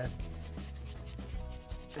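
Soft, steady rubbing and handling noise with a low rumble underneath.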